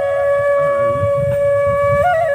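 Background music: a flute holding one long steady note.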